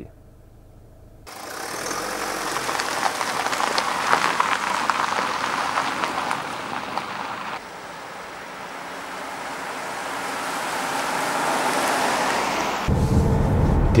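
Mazda CX-5 Skyactiv-D diesel SUV driving on the road: a steady hiss of tyres and wind that grows louder as the car approaches. About a second before the end, the deeper steady hum of the running diesel is heard from inside the cabin.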